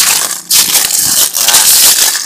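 A heap of loose, discarded clam shells crunching and clattering as it is stepped on and scooped into by hand. The crunching is loud and nearly continuous, eases briefly just before half a second in, then resumes.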